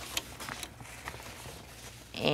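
Faint handling noises from re-hooping fabric in a plastic machine-embroidery hoop: a few light clicks and rustles as the hoop and stabilizer are handled and smoothed.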